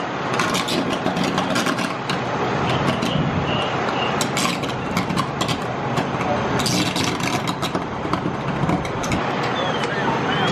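An engine running steadily, with scattered sharp knocks and clicks over it and voices in the background.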